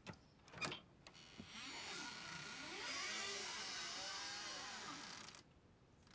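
Two sharp clicks at a closet door, then its hinges creaking for about four seconds, wavering up and down in pitch, before cutting off suddenly.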